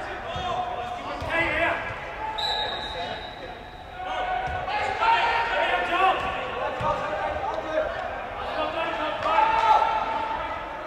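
Players' voices calling and shouting across a large echoing indoor football hall, with the dull thuds of a football being kicked. A single high whistle blast, held for over a second, sounds about two and a half seconds in.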